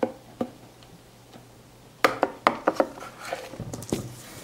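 Thin crumpled plastic drink bottle being handled: two knocks at the start, then a quick run of sharp crackles about two seconds in, trailing off into softer crinkling.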